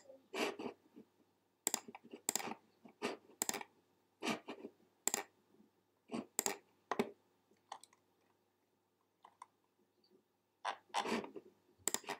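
Irregular clicks and taps from a computer keyboard and mouse, about fifteen over several seconds, with a quieter gap about eight seconds in.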